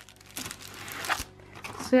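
Plastic packaging crinkling as a paintbrush in its clear plastic wrapper and a canvas are handled, in a few rustling bursts.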